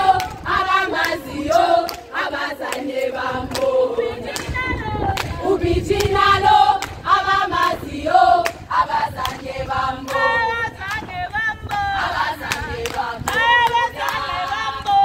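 A crowd of young women singing and chanting together in unison, loud and continuous, with hands clapping along throughout.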